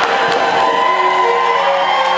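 Music from the film's soundtrack playing in the theatre, with an audience cheering over it.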